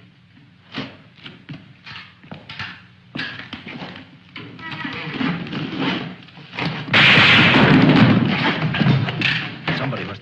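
A film's struggle soundtrack: a run of separate thuds and knocks, building into denser sound with music and voices. About seven seconds in, a sudden loud harsh noise lasts a couple of seconds.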